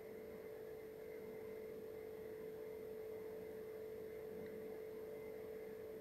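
A faint, steady electrical hum over a thin hiss, unchanging throughout. No pen scratching stands out above it.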